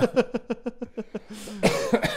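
Men laughing in quick rhythmic pulses, ending in a cough-like breathy burst near the end.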